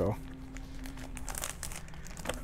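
Plastic comic-book bags crinkling and crackling as they are handled and untaped, in scattered light crackles.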